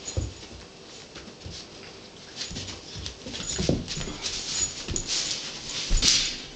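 A beagle puppy and another pet play-wrestling on carpet: irregular scuffling and bumping, with a few short dog noises, loudest near the end.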